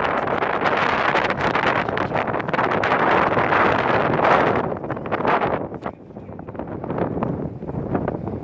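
Wind buffeting the microphone in gusts, loudest in the first half and dropping briefly about six seconds in.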